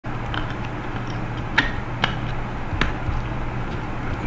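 Three sharp clicks, spaced about half a second to a second apart, over a steady low hum of background noise.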